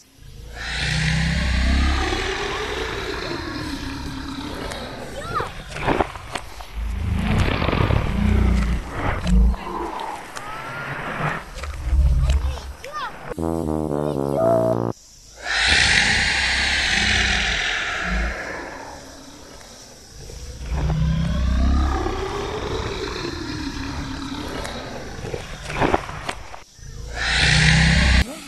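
Monster roar sound effects: several long roars and growls with a wavering pitch, broken by short drop-outs about halfway through and near the end.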